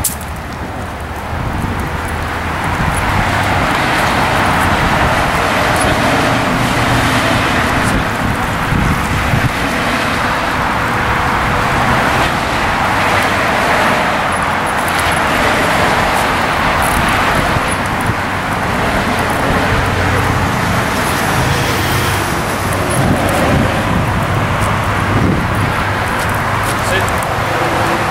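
Steady road traffic noise, a continuous loud rush of passing cars with no clear breaks.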